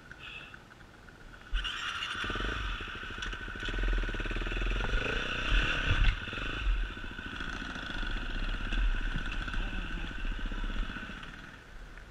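Enduro dirt bike engine heard from the bike itself, quiet at first, then opening up about a second and a half in and running hard, its revs rising and falling as it is ridden along the trail, before easing off near the end.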